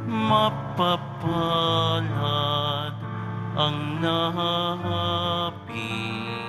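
A slow communion hymn sung in held, wavering notes over a sustained accompaniment.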